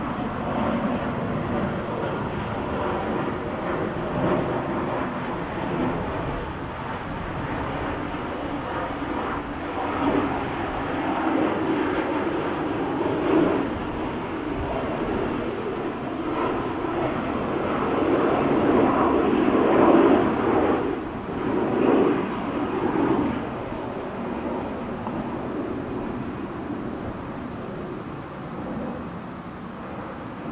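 Honey bee colony humming in an observation hive, a steady drone that swells louder for a few seconds about two-thirds of the way through.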